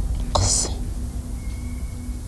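A brief breathy vocal sound from a person, a sharp intake of breath or whisper, about a third of a second in, over a low steady hum.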